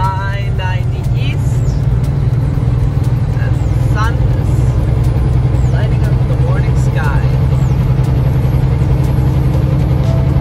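Semi truck's diesel engine and road noise heard from inside the cab while driving at highway speed: a loud, steady low drone.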